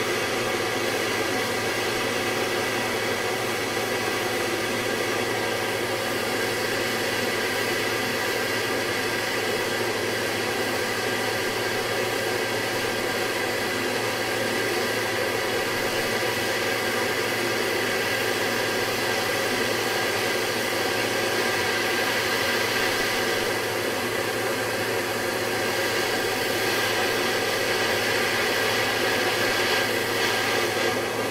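Handheld gas torch burning with a steady hiss, its blue flame heating a brass joint for silver soldering.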